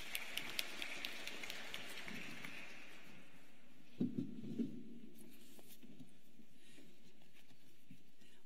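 Audience applauding in a standing ovation. The clapping is thickest in the first few seconds and then thins out and fades, with a brief voice heard about four seconds in.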